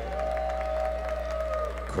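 Light, scattered audience applause over a steady electrical hum from the public-address system, with a faint held tone that fades out near the end.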